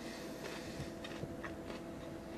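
Faint chewing of a pickled garlic clove, a few soft crunchy clicks, over a steady low hum.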